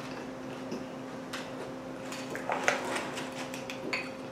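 Short crackles and clicks of tortilla chips being picked from a bowl and handled beside a plate, a few scattered through, the busiest stretch a little past the middle. Under them runs a steady low hum.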